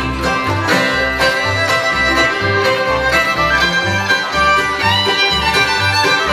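Live bluegrass band playing an instrumental break: fiddle and banjo over acoustic guitars, resonator guitar and mandolin, with the upright bass on a steady beat about twice a second.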